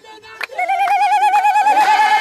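A woman's ululation: a long, rapidly warbling high trill held at one pitch, starting about half a second in after a single handclap.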